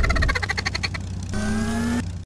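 A cartoon sound effect: a rapid, even rattle of pulses, about a dozen a second, lasting a little over a second. Steady background music then comes back in.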